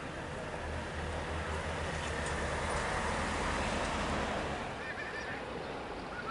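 Surf washing up the beach, swelling to a peak in the middle and easing off, over a low wind rumble on the microphone. A few short gull calls come near the end.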